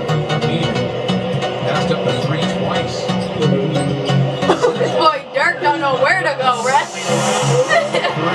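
Music with a steady, stepping bass line, from the basketball compilation being watched. About halfway in, a voice comes in over it.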